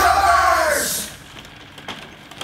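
A person's voice holding one long note that falls in pitch, over a bright hiss, cutting off about a second in; then a quiet background with a single click.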